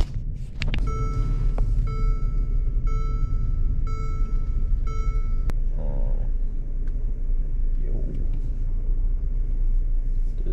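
Steady low rumble of road and engine noise inside a moving Mercedes-Benz's cabin. A dashboard warning chime sounds about once a second, five times, and stops with a sharp click about halfway through.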